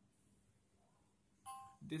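Quiet room tone, then about one and a half seconds in a brief electronic chime made of two steady tones sounding together, fading within a quarter second.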